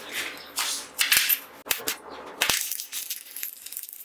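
Electric arc welding on mild steel plate: the arc crackles and sizzles in several short tack-weld bursts, then a longer run in the second half.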